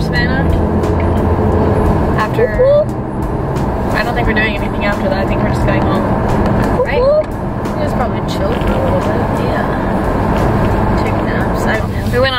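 Steady road and engine noise inside the cabin of a moving car, with women's voices coming and going over it.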